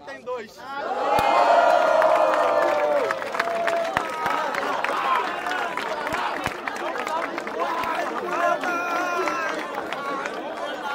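Crowd of spectators shouting and cheering in reaction to a rap battle verse, bursting out about a second in and loudest for the next two seconds, then carrying on as a mass of overlapping yells.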